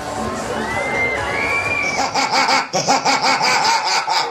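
Funfair crowd bustle with voices and two high held tones. About halfway through, loud electronic dance music from a fairground ride's sound system cuts in, with a fast pulsing beat.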